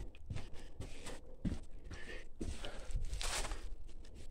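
Plastic sample bags rustling and crinkling as rock samples are handled, with a couple of soft knocks about a second and a half and two and a half seconds in.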